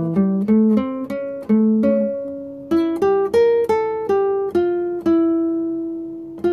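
Classical guitar played fingerstyle: a melody of single plucked notes, about three a second, closing on one long held note near the end. It is an improvised line in the A7 melody position, the bridge chord from A minor to D minor.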